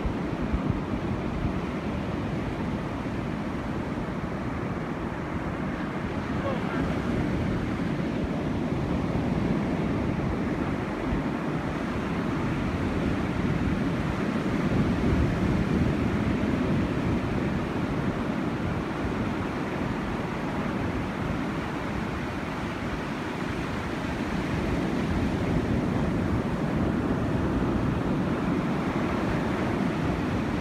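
Ocean surf breaking on a beach: a steady rush of waves that swells a little at times.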